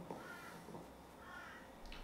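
Two faint, short bird calls, caw-like, in a quiet room, with a small click near the end.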